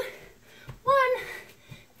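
A woman's voice counting down "two… one", with faint low thuds of feet landing on carpet in plank jacks between the words, about one a second.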